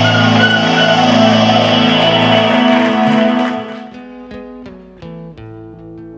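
A loud held chord with a slight pulse fades out about three and a half seconds in. A nylon-string acoustic guitar then plucks slow single notes and broken chords, each note ringing and dying away.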